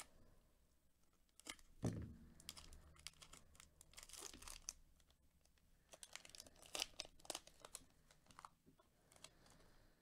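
Quiet tearing and crinkling of a trading card pack's wrapper as it is slit open and pulled apart, with scattered short crackles. A soft thump about two seconds in.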